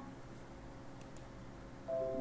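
Quiet pause in the narration: faint steady hum and hiss with a faint tick about a second in, and a held musical note coming in near the end.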